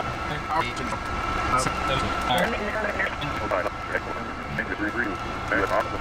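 Indistinct talk over the steady hum of a jet cockpit on the ground, with a thin high whine held throughout.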